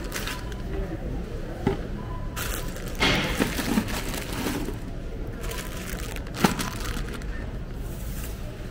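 Supermarket ambience: indistinct voices and the steady low rumble of a wire shopping cart being pushed, with sharp clatters from the cart. The loudest clatter comes about six and a half seconds in.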